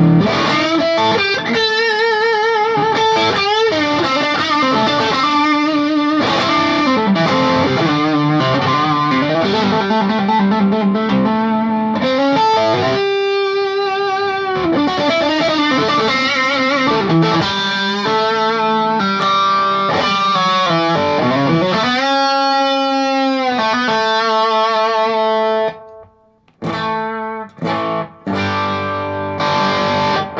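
Electric guitar lead played through the Wampler Tumnus Deluxe boost/overdrive pedal set into overdrive: held notes with wide vibrato and string bends. Near the end the line breaks off into a few short chord stabs.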